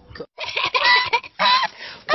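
A domestic goose honking: several loud, harsh honks in quick succession, starting about half a second in after a brief gap.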